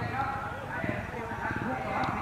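Several dirt bike engines idling and puttering in a rapid, even pulse, with a crowd of voices talking over them.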